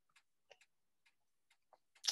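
Near silence with a few faint, irregularly spaced clicks.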